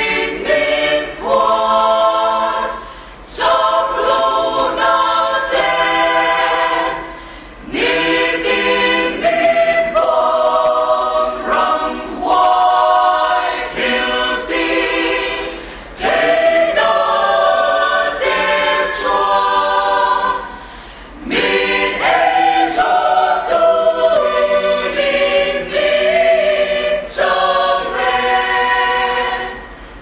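A mixed choir of women and men singing together, in long phrases with brief pauses between them.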